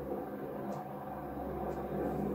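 An aeroplane going past, a steady low drone.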